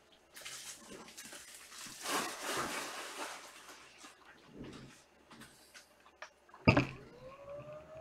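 Rustling and handling noise of a person moving about at a desk. Near the end there is a sharp knock, followed by a drawn-out squeak that rises and then falls in pitch.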